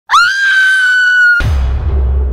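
A woman's high-pitched scream, rising at the start and held for over a second, then cut off abruptly by a deep booming hit that rumbles on.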